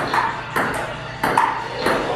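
Table tennis rally: the ball clicking off the paddles and bouncing on the table, a sharp tock roughly every half second.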